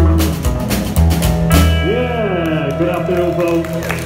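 Live trio of slapped upright double bass, snare drum and hollow-body electric guitar playing the last bars of a song. The drum beat stops about a second and a half in, and the final chord rings on with notes sliding down in pitch.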